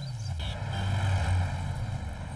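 Car engine running with a low steady hum that grows slightly louder, with a short knock about half a second in.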